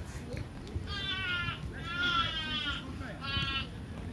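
Three high-pitched, wavering shouts from children, the middle one the longest and loudest.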